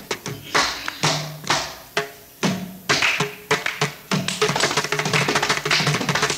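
Mridangam playing a fast run of strokes, its tuned drumheads ringing briefly between the sharper slaps.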